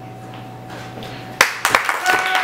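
Audience applause breaking out about a second and a half in, starting with a few sharp, loud claps, after a pause in which only a steady hum is heard.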